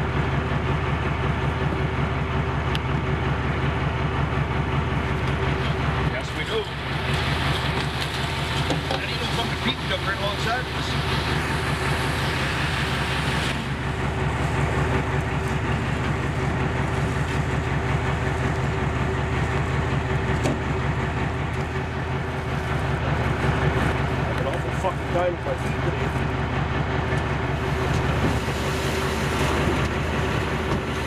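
Fishing boat's engine running steadily under way, a fast even low pulse with a constant hum over it.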